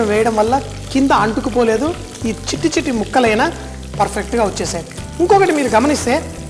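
Fish pieces sizzling as they shallow-fry in oil in a pan, with a spatula scraping them out; a man's voice talks over the frying.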